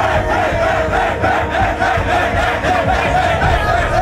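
A group of men chanting and shouting together in celebration, in a rhythmic repeated chant.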